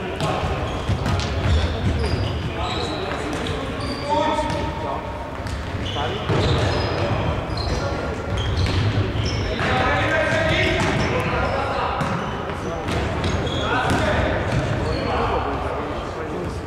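Indoor futsal play in an echoing sports hall: players shouting to each other, the ball being kicked and bouncing on the wooden floor, and short high squeaks of shoes on the boards.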